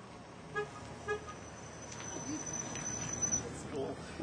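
Two short horn beeps about half a second apart, followed by a faint, thin, high steady whine that cuts off shortly before the end.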